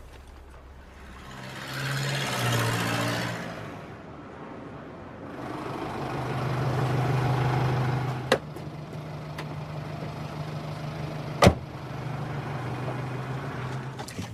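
Road traffic: a motor vehicle swells past, then a low engine hum holds steady. Two sharp clicks sound over it, the second and louder one near the end.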